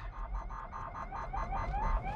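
Emergency vehicle siren on a code-three response, first sounding a rapid pulsing run of short chirps, about eight a second, then starting a rising wail near the end.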